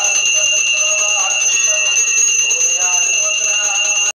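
A puja bell ringing continuously and loudly, a steady high ring, during the harathi lamp offering, over a devotional song.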